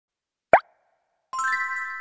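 Cartoon intro jingle. A single short pop comes about half a second in, then just past a second in a bright chord of held chiming tones with a sparkling shimmer starts and keeps sounding.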